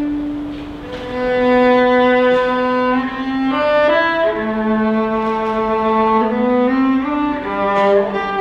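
Solo cello played with the bow: a slow melody of long held notes, stepping to a new pitch every second or so.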